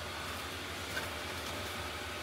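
Small electric blower fans of inflatable Christmas decorations running steadily, a low even hum with a hiss over it.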